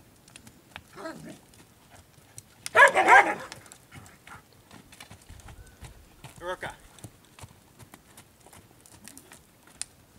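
Hoofbeats of a horse trotting on dirt, a light uneven run of soft clicks, with a dog barking in a quick run of barks about three seconds in.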